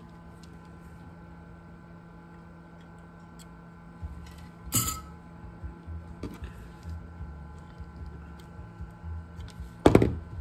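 Small clicks and taps of hand tools and parts being handled on a workbench, over a faint steady hum. There is a sharper tap a little before the halfway point and a sharp, loud click near the end.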